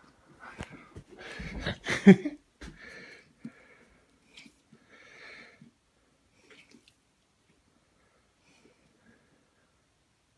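A St. Bernard breathing heavily after the effort of hauling itself up onto a bed: a few loud breaths that die away by about six seconds in. A person laughs about two seconds in, the loudest sound.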